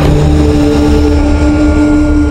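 Loud intro theme music: a deep rumbling bass under held notes, with a swelling whoosh effect at the start.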